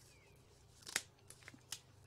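Scissors snipping through the dry, straw-like roots of a cured garlic bulb: one crisp snip about a second in, then a few fainter clicks.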